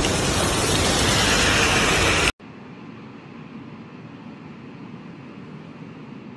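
Heavy rain pouring down on a car and a flooded street, a loud steady hiss that cuts off abruptly about two seconds in. A much fainter steady hiss follows.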